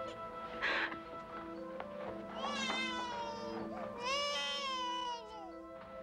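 High-pitched crying, two long wailing cries about two and a half and four seconds in, each falling in pitch, over a soft sustained music score.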